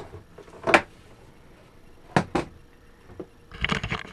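A few sharp knocks and clunks of hands working at the boat's wiring panel: one about a second in and two close together past the two-second mark. Near the end comes a cluster of clicks and rustling as the camera is handled and moved.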